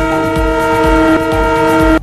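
News-bulletin transition sting: a loud, sustained chord of several steady tones, horn-like, over a pulsing low bass. It ends abruptly at the close.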